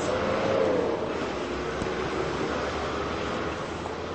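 Steady background noise of a city street, an even hum of traffic and surroundings, with a faint held tone that bends slightly in the first second or so.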